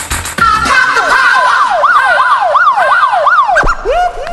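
A siren sound effect within a dance music track: a fast wailing tone that sweeps up and down about three times a second, breaking off with a downward sweep near the end.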